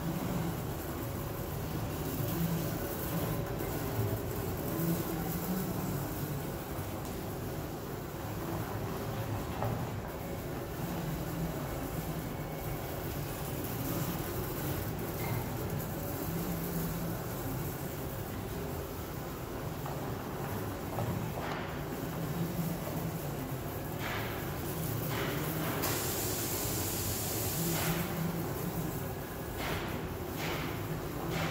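Handle-It MR3000 mobile robot stretch wrapper running its automatic wrap cycle, its motors humming steadily as it drives around a pallet. A few clicks and a brief hiss come near the end.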